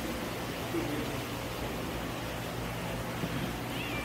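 Steady low hum and hiss of background room tone, with a brief faint voice about a second in.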